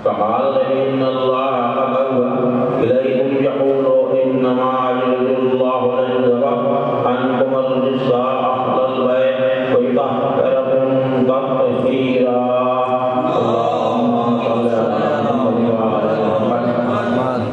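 A man's voice chanting a devotional recitation into a microphone, in long held melodic phrases with brief pauses for breath.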